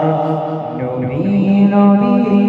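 A man singing a Bengali Islamic gojol (naat) into a microphone, holding long notes. About a second in, his voice dips and then glides into a new sustained note.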